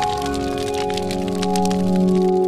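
Outro logo jingle: sustained synth music with a dense crackling sound effect laid over it.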